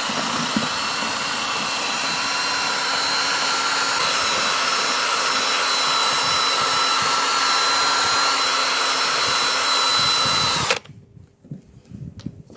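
Cordless drill running at steady speed, spinning a homemade blade attachment inside a saucepan to chop dried moss: an even motor whine over a noisy hiss. It cuts off suddenly near the end.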